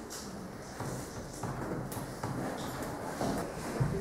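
Quiet classroom room tone with a few faint scattered clicks and shuffling sounds, and a soft low knock near the end.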